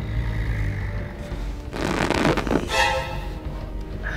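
Eerie background music: a low drone, then a noisy whoosh swelling about two seconds in, followed by a sustained ringing chord that fades out.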